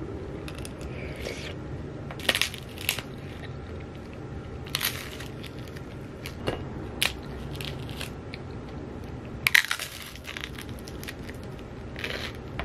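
Close-up eating sounds of naan with curry: scattered crunchy crackles of biting and chewing the charred bread, the loudest a quick cluster near the end, over a low steady room hum.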